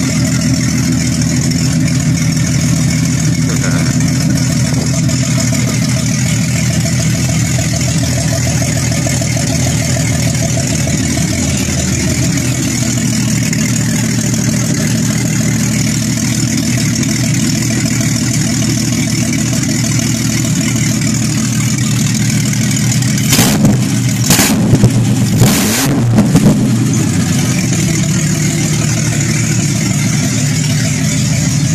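Jeep Cherokee 4.0 inline-six with a ported, milled head running at idle through an open Banks Revolver header, on its first run after the head work. About three quarters of the way in come a few short, loud bursts, one of them rising in pitch like a blip of the throttle.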